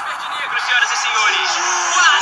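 People's voices, speech-like calls, over a steady background hiss of noise.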